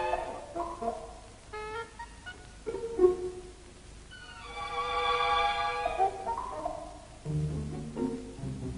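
Orchestral background music led by strings, playing sustained notes that swell and fade; lower notes come in near the end.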